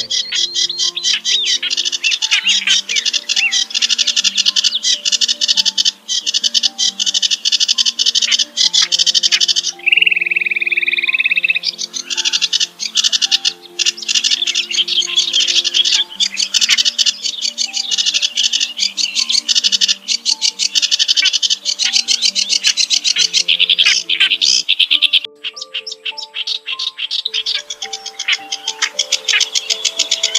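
Looped bird-trapping lure recording of small songbirds: a continuous, very fast, high-pitched chattering trill, broken by a short steady whistled note about ten seconds in and a sparser clicking stretch a few seconds before the end. A simple melody of low notes plays underneath.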